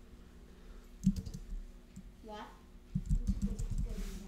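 Typing on a computer keyboard: a single sharp keystroke about a second in, then a quick run of keystrokes near the end.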